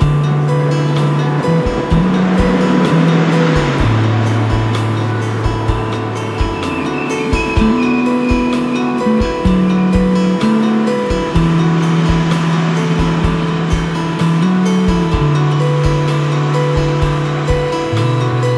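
Instrumental passage of a progressive rock song: a sustained bass line moving between notes over steady drum hits and dense guitar and keyboard layers, with no vocals.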